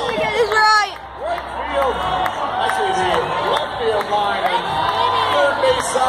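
Baseball stadium crowd cheering and yelling, many voices shouting over one another, with a few louder voices close by in the first second.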